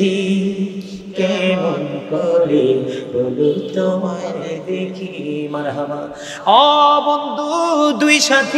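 A man's voice chanting in a drawn-out, melodic sermon style, holding long notes and gliding between pitches. About six and a half seconds in, it jumps louder to a higher held note with a wavering pitch.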